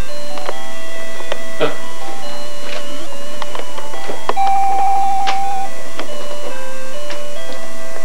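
Electronic baby toy playing a simple beeping tune, single notes stepping up and down, with a warbling trill held for about a second and a half midway, and a few short clicks.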